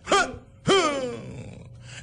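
A man's voice giving two short wordless exclamations, each falling in pitch, the second longer.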